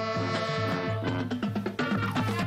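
High school marching band of saxophones, clarinets, flutes and drums playing live. A chord is held through the first second, then rhythmic playing over a steady low beat.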